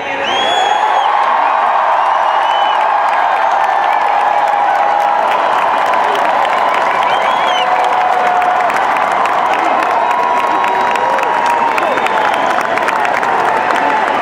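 Large rally crowd cheering, whooping and clapping, rising sharply at the start and then holding steady and loud, with individual shrill shouts standing out above the din.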